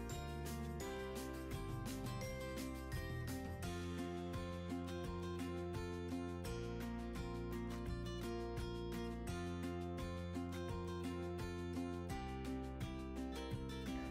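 Background music with a steady beat and bass notes that change every second or two.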